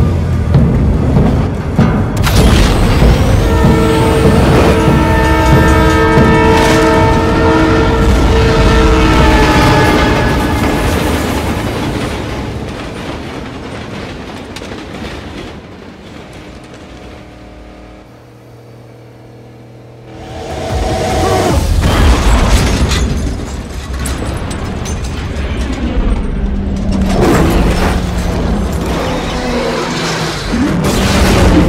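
Movie soundtrack of a drag race: a supercharged V8 Dodge Charger and a Toyota Supra running flat out under a film score, with a train horn blowing one long steady chord from about three to ten seconds in. The sound falls to a hush in the middle, then the engines and music surge back with heavy booms.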